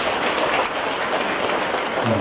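Congregation applauding: many hands clapping together in a steady, loud patter.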